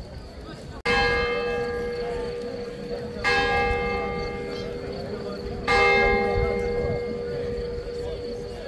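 Church bell struck three times, about two and a half seconds apart, each stroke ringing on and slowly fading into the next.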